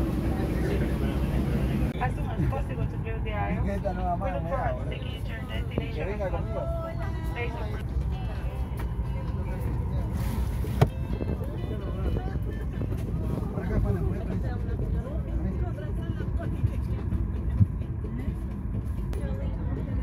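Inside a Boeing 737 MAX 8 cabin during boarding: a steady low rumble of cabin air, with passengers talking in the background. There are a few sharp clicks, the loudest about eleven seconds in and another near the end.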